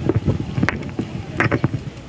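Wind buffeting and handling bumps on a handheld microphone as it is passed from one person to another, with two sharper knocks, one about a third of the way in and one about two-thirds in.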